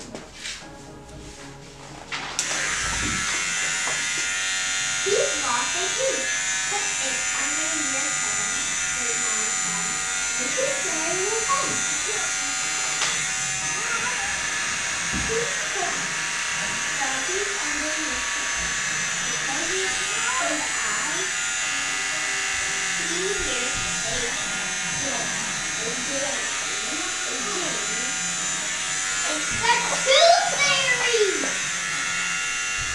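Electric hair clippers switched on about two seconds in and then buzzing steadily as they cut a boy's hair.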